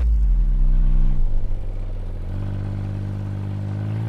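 Vehicle engine running with a deep rumble, its pitch dropping about a second in and rising again a little after the middle.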